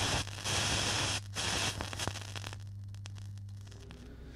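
Static-like hiss over a steady low hum, with a few faint clicks; the hiss is strongest in the first half and fades down after about two and a half seconds.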